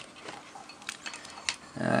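Faint handling clicks from an oscilloscope probe and its lead being moved over a circuit board: one click about a second in and another about half a second later. A man's hesitant "uh" comes near the end.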